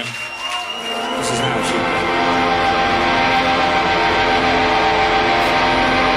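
Amplified electric bass holding a droning chord, swelling in about a second in and ringing steadily.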